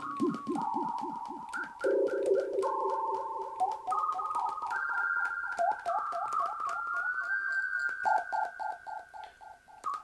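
Siren-like electronic tones from a one-button synthesizer programmed on an STM32F4 Discovery board, with a delay effect: pure tones that warble and step from pitch to pitch, each note repeating in echoes several times a second. Near the middle it steps up higher with a slow rising glide, and it gets quieter near the end.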